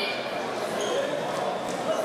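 Indistinct chatter of many voices echoing in a large sports hall, steady throughout.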